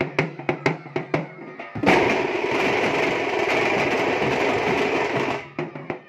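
Tamate drum troupe beating large stick-played drums and frame drums in a steady fast beat. About two seconds in they break into a loud continuous drum roll that lasts about three and a half seconds, then fall back into separate beats near the end.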